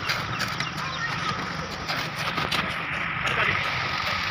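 Site noise of a concrete roof-slab pour: shovels working wet concrete, with workers' voices and a steady low hum underneath.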